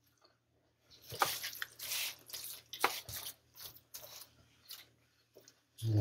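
Gloved hands mixing shredded pulled pork in a disposable aluminium foil pan: irregular wet squishing of the meat with crinkles of the foil, starting about a second in.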